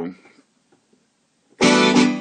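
Roland FA-06 synthesizer keyboard sounding one loud chord about one and a half seconds in, from a studio set layering piano and brass tones.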